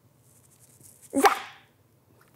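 A woman's single short, sharp shout of "Zap!" about a second in, after near silence, with a faint hiss just before it.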